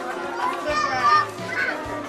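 High-pitched voices calling and chattering, mixed with music.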